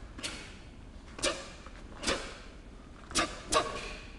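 A taekwon-do student's pattern techniques: a short, sharp snap with each movement, five in all. They come about a second apart, and the last two, about a third of a second apart, are the loudest.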